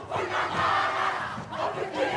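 Kapa haka group performing a whakaeke: many men's and women's voices shouting and chanting together in haka style.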